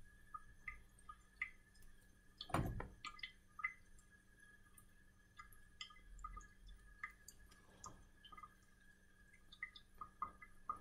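Quiet room tone with faint, scattered small clicks and ticks and one soft knock about two and a half seconds in.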